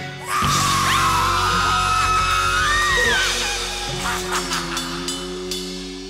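The ending of a rock song: a long, wavering high yell over the full band, then the last chord ringing on and fading out.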